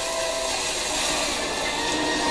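Cartoon sound effect of a wooden sailing ship rushing through the sea: a steady, even rushing noise, with faint music tones under it.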